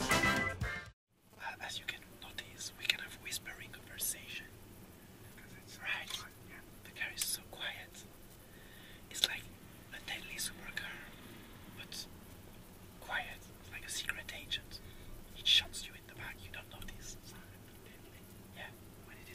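Background music cuts off about a second in, followed by faint, whispery talk.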